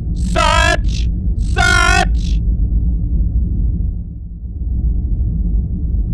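Steady low spaceship-interior rumble with a faint hum, dipping briefly about two-thirds through. Two short warbling electronic calls come in the first two seconds.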